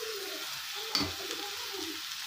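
Blended tomato paste sizzling in hot oil in a frying pan as it is poured in, with one sharp metal clink against the pan about a second in.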